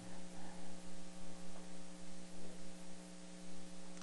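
Steady electrical hum made of several fixed low tones over a faint hiss.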